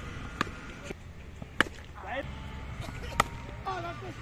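A sharp knock of a cricket bat striking the ball about one and a half seconds in, with two fainter knocks, one before and one after, over outdoor background noise. Brief shouts come in the second half.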